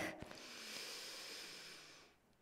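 A woman's long, deliberate inhale of a paced yoga breathing exercise, a faint airy hiss lasting nearly two seconds that fades out near the end.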